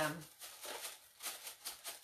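A spoken 'um' trails off, followed by a pause filled with faint scattered clicks and light rustling.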